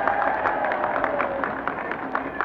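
Crowd applause from a vintage vinyl recording: a dense patter of many hand claps with individual claps standing out, and a held cheer that fades out in the first second or so.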